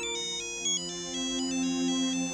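Mobile phone ringtone for an incoming call: a quick melody of high electronic notes, over sustained background music.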